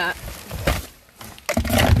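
Items rustling and knocking in a cardboard box, then a louder rustling thump near the end as a trigger spray bottle's sprayer head pulls off in the hand and the bottle drops and spills a little cleaner onto the cardboard.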